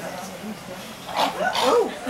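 A person's voice giving short yelping cries with a bending pitch, starting a little past the middle, after a quieter first second.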